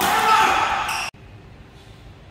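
Players' voices shouting after a won rally, cut off abruptly about a second in, leaving only the faint hush of the hall.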